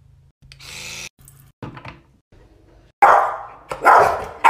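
An electric toothbrush buzzes briefly near the start. About three seconds in, dogs, a golden retriever among them, give three short loud calls in quick succession.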